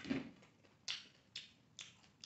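Close-miked wet mouth sounds of someone chewing a mouthful of rice and greens: a fuller sound at the start, then sharp lip smacks about twice a second.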